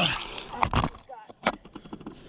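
A few sharp knocks and scuffs of shoes and gear against a granite boulder as someone clambers up it; the loudest knock comes a little under a second in, and another click about halfway through.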